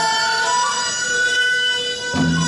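Live Korean traditional music accompanying a tightrope act: a slow melody of long held notes that steps to a new pitch about half a second in.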